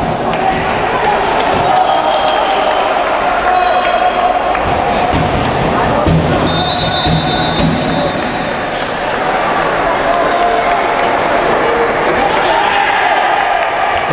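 Futsal game sound in a sports hall: players' voices and shouts over the ball being played and bouncing on the court. A brief high-pitched tone sounds about six and a half seconds in.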